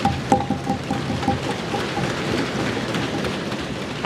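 Many members of parliament thumping their wooden desks in applause, a dense, irregular patter of knocks that holds steady throughout.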